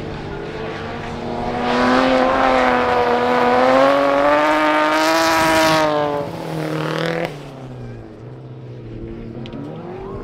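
Four-wheel-drive folkrace car's engine at full throttle, getting louder as it comes close past on a dirt track, its pitch climbing slowly as it accelerates. The sound drops away abruptly about seven seconds in, leaving other race engines running more quietly further off.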